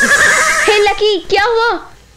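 Horse whinnying: a breathy rush of noise, then a quavering, wavering call lasting about a second.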